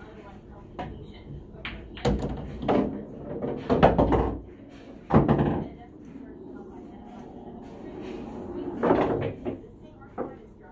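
Pool shot: a cue striking the cue ball, then balls knocking together and against the cushions, several sharp knocks spread over a few seconds.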